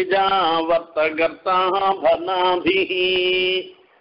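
A man's voice chanting in a steady recitation pitch, the notes held longer and flatter than speech, with one long sustained note near the end before it stops.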